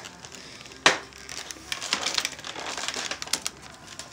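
Handling noise: one sharp click about a second in, then an irregular run of small clicks and rustling.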